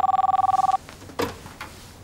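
A mobile phone ringing with a warbling two-tone electronic trill that cuts off under a second in, followed by a faint click.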